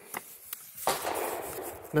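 A couple of light clicks, then about a second of paper rustling as a handwritten card is pulled from a plastic cartridge loading block and held up.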